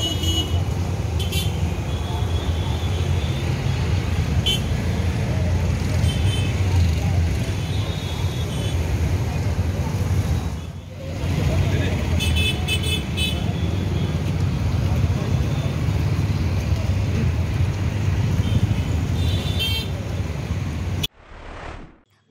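Street traffic: a steady low rumble of vehicle engines with short vehicle-horn toots several times. The sound dips briefly about eleven seconds in and cuts off about a second before the end.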